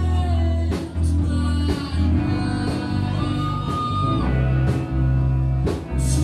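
Live rock band playing a song, with guitar and a singer's voice over a heavy low end, and strong beats about once a second.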